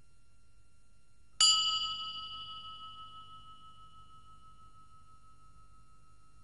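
A single bell-like chime, struck once about a second and a half in. It rings with several tones and fades away over the next few seconds, leaving one lower tone that lasts longest.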